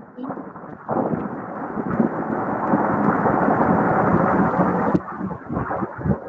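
Loud rushing, rumbling noise over an open microphone on an online call. It swells about a second in, holds steady, and drops off suddenly near the end.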